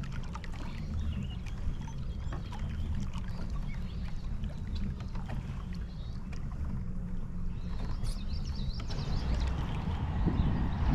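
Jackson Bite FD pedal-drive kayak under way: a steady low rumble with light water splashes and small ticks scattered through it.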